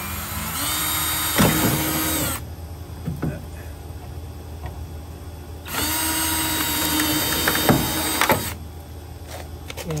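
Cordless drill running in two bursts of about three seconds each, a few seconds apart. Each burst starts with a short rising whine and then holds steady as the bit works a screw hole into a plastic downspout adapter.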